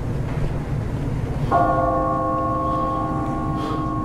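A clock tower bell strikes once about a second and a half in and rings on with a rich, sustained tone, over a low steady rumble.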